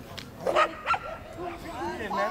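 Border collie barking twice in quick succession, about half a second and about a second in, with people talking.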